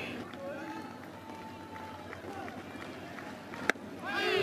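Ballpark crowd murmur with faint voices, then near the end a single sharp pop of a 143 km/h fastball smacking into the catcher's mitt: a called strike on the inside corner.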